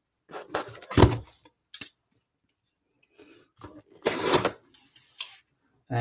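Cardboard trading-card boxes being handled and set down on a tabletop: a few knocks and scuffs, with a near-silent pause in the middle and a longer scrape about four seconds in.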